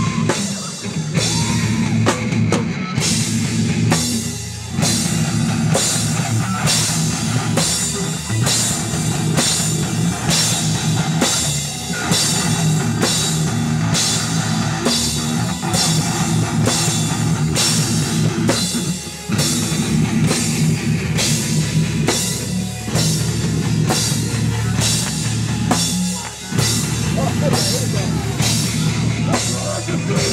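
Live heavy metal band playing: distorted electric guitars and bass over a drum kit keeping a fast, steady beat, with a few brief breaks in the riff.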